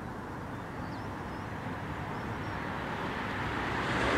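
Steady outdoor background noise, like distant traffic, gradually growing louder and swelling near the end.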